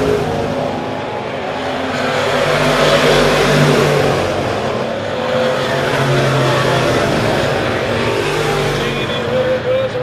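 Several dirt-track Sport Mod race cars running hard around the oval, their engines overlapping. The sound swells as the pack passes, loudest about three to four seconds in and again a few seconds later.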